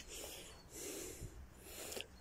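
Faint breathing, about three breaths, from someone walking over rough hillside ground.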